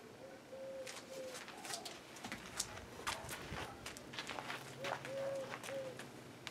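A dove cooing, a three-note coo with the longest note in the middle, heard twice: near the start and again near the end. Scattered sharp clicks and taps come between the calls.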